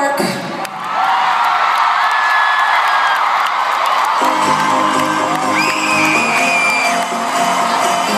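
Arena crowd cheering and whooping. About four seconds in, a song's intro starts over the PA with held chords, and the crowd cheers on over it.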